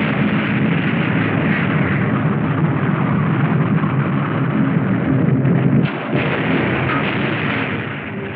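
Depth charges exploding underwater as a continuous low rumble, loud throughout, with a brief dip about six seconds in. It is the sound of a submarine under depth-charge attack.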